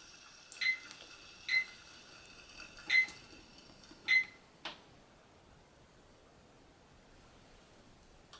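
AcuRite digital timer beeping as its buttons are pressed: four short, high beeps about a second apart, then a click.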